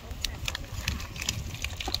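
Self-heating hot pot's heating pack reacting with freshly poured water, giving irregular crackling and popping over a low rumble as it steams.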